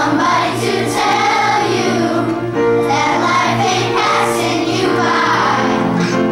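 A children's choir singing a song together.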